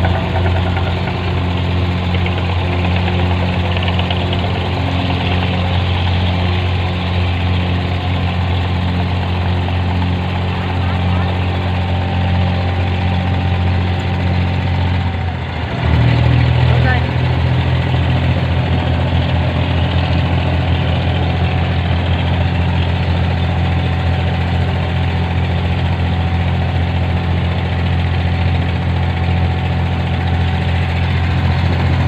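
Wooden abra water taxi's inboard diesel engine running steadily under way, heard from on board. About halfway through the engine note dips briefly, then comes back changed and louder as the throttle is changed.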